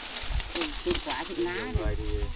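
Quiet, indistinct talking, a voice speaking too softly to make out, with a few low rumbling thumps.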